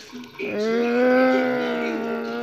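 A person's voice holding one long drawn-out vocal sound at a steady pitch, starting about half a second in, with no words in it.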